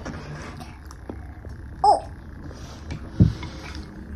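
Quiet eating at a table: a few faint clicks of cutlery against ceramic plates over a steady low background. A short exclaimed "oh!" comes just under two seconds in, and a brief, loud, low sound falling in pitch follows a little past three seconds.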